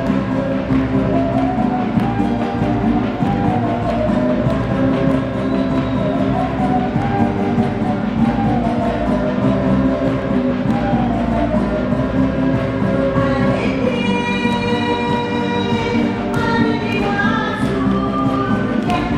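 Live Bolivian folk band playing for a dance: strummed guitars and drums under a group of voices singing the melody, with a brighter high part joining near the end.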